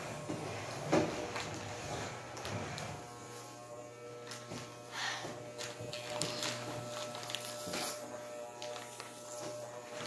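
Electric hair clippers running with a steady buzz, with a few brief knocks from handling.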